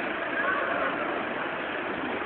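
Steady outdoor background noise of a town street, an even hiss-like rumble with no clear single source, and a faint distant voice briefly about half a second in.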